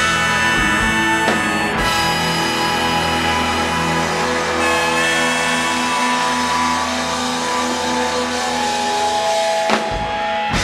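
Rock band playing live: electric guitars and bass holding ringing chords over the drum kit, with a sharp drum hit near the end.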